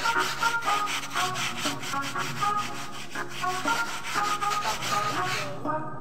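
A wet carpet being scrubbed by hand in a basin: a fast, even rubbing at about five strokes a second that stops near the end, with music playing underneath.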